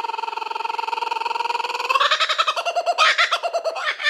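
Laughing kookaburra call: a rolling, rapidly pulsing chortle that swells about halfway through into louder, rhythmic cackling notes.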